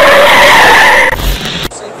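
Loud tyre-screech skid sound effect, edited in over a cut between scenes. It starts abruptly, holds a steady screeching pitch for under two seconds, and cuts off suddenly.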